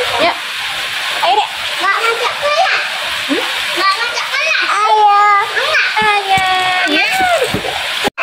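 Steady rain falling, a constant hiss, with children's and a woman's voices talking over it, louder in the second half.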